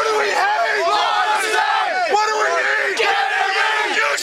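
A crowd of young people shouting and yelling together, many voices overlapping loudly.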